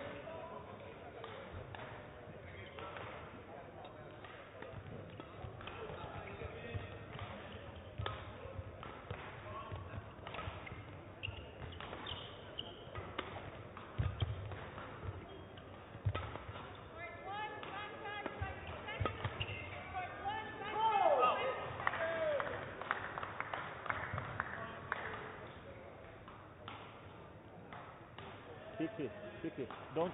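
Badminton rally: rackets striking the shuttlecock back and forth in quick single hits, with players' footsteps and rubber shoe squeaks on the court floor. The squeaks are thickest about two-thirds of the way through.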